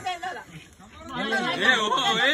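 Several men talking over one another. There is a short lull near the start, and the chatter picks up again about a second in.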